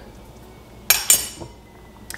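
A metal spoon clinking twice against a cup, about a second in, the two strikes close together with a short ring.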